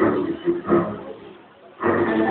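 Men shouting loudly and roughly for about a second, then dying away. Music starts abruptly near the end.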